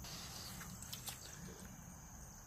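Quiet outdoor background with faint, steady high-pitched insect chirring, likely crickets, and a couple of faint ticks about a second in.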